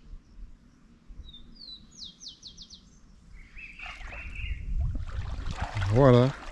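A songbird calls about two seconds in: a short rising note, then a quick run of five high descending notes. A lower, wavering bird call follows about a second later. Low rumbling noise builds over the last two seconds.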